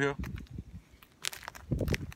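Rustling and light knocks from handling close to the microphone: clothing and the AR pistol being moved and raised, with a brief rustle past the middle and a heavier bump near the end.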